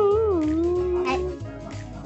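A drawn-out, wavering howled "oooh" that slides down in pitch and stops about a second and a half in, over background music.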